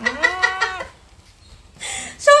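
A woman's drawn-out whining vocal cry, about a second long, rising then falling in pitch, followed by a short breathy hiss near the end.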